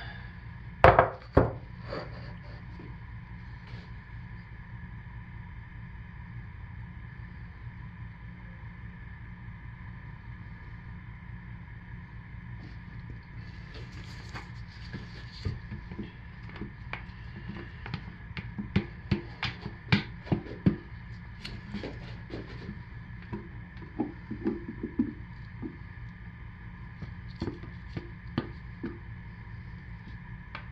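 Handling noise of a plastic pitcher and spatula as thick soap batter is stirred and poured into a wooden mold: two sharp knocks about a second in, then scattered light clicks and taps from about halfway on. A steady background hum runs underneath.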